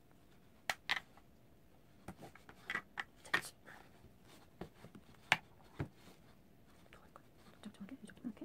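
Close handling of a doll's synthetic hair: soft rustles and a string of light clicks as fingers gather the hair and wind a beaded hair tie around it. The loudest clicks come about a second in, in a cluster around three seconds, and just after five seconds.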